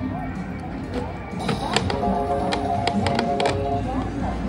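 Electronic casino craps machine sounds: a quick run of sharp clicks with a held chime-like chord of steady tones in the middle, stopping shortly before the end, over casino chatter.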